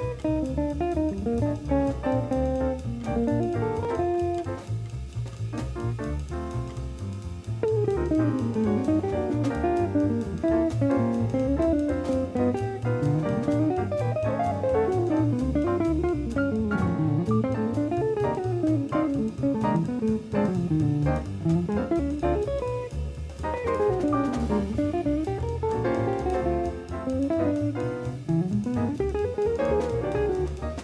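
Small jazz combo playing, with a semi-hollow electric guitar soloing in quick runs of notes that climb and fall, over walking double bass, piano and drum kit.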